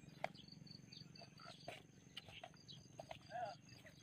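Near silence: faint outdoor background with a thin steady high tone. There is a small click near the start and a faint distant voice a little past three seconds in.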